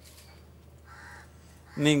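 A crow caws once, harshly, about a second in, over a faint steady low hum; a man's voice starts near the end.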